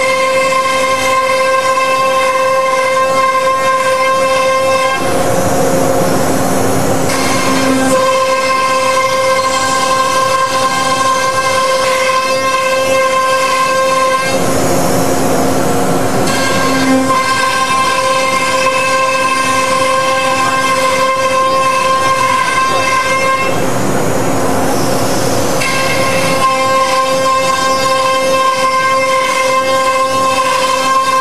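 CNC router spindle running at high speed while its bit cuts parts from a sheet of board: a steady whine with a clear pitch. About every nine seconds, for two to three seconds, the whine gives way to a louder rushing noise.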